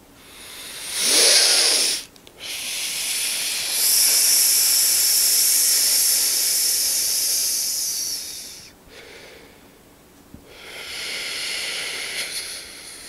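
Breath noise into a handheld microphone held close to the mouth: a short breath about a second in, then a long steady hissing breath lasting about six seconds, and another starting near the end.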